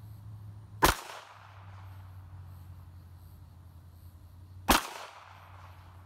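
Two handgun shots about four seconds apart, each a sharp crack with a short echo trailing off.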